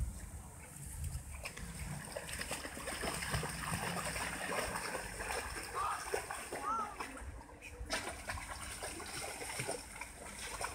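Staffordshire bull terrier splashing through shallow stream water as it paddles and wades, a run of quick, irregular splashes.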